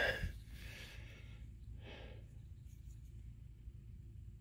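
A person sighing softly once, about halfway through, over faint low background noise.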